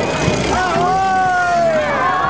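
Crowd of many voices calling and shouting at once, with one long drawn-out call in the second half, over the low running of a truck engine.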